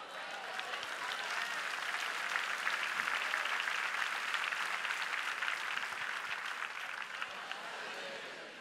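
A large congregation applauding, the clapping swelling over the first three seconds or so and then slowly dying away.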